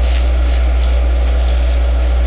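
A loud, steady low hum with hiss underneath, and a few faint soft rustles as a fabric flower is handled close to the microphone.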